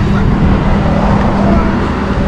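Steady low engine hum and rumble of road traffic, under faint voices.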